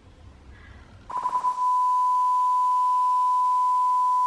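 Censor bleep: a single steady high tone starts about a second in and holds, blanking out spoken words.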